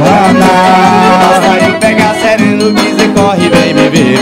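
Forró band playing an instrumental passage: piano accordion carrying the melody over acoustic guitar and a zabumba bass drum keeping a steady beat.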